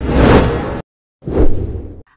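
Two whoosh sound effects from a news channel's animated intro graphics. The first lasts under a second; the second starts just past a second in and fades away.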